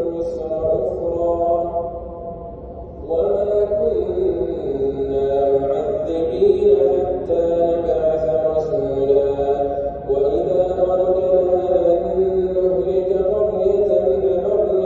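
A man's voice chanting Islamic prayer in Arabic, melodic and drawn out, with long held notes that glide up and down. There is a short lull about two to three seconds in and a brief break near the ten-second mark.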